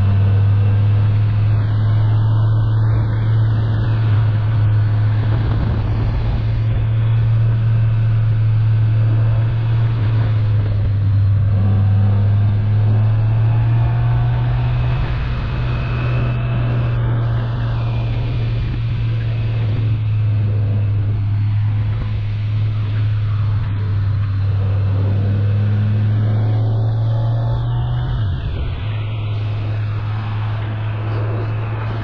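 Motorcycle engine drone at steady cruising speed, heard from the rider's seat with wind noise over it. The engine note rises slightly about halfway through as the speed picks up.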